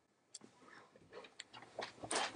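A few faint, scattered clicks from working the computer, over near-silent room tone.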